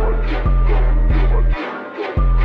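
Dark trap instrumental beat: a deep, sustained 808 bass note that cuts out about a second and a half in, under steady, rapidly repeating hi-hat-like percussion and a dark melody.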